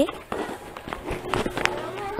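Footsteps of people walking on a dirt path, a series of short scuffing steps.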